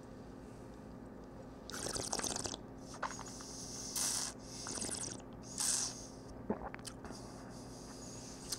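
A mouthful of red wine being tasted: several short wet slurps and swishes about two seconds in, then again between four and six seconds.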